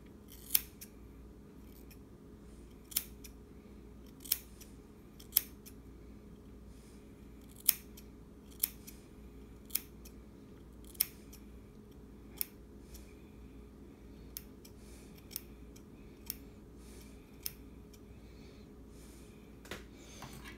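Scissors snipping through a child's hair in single cuts, about a dozen separate snips at uneven gaps of a second or two, the later ones fainter.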